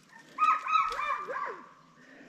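A dog barking a quick run of about five short, high barks, then falling quiet.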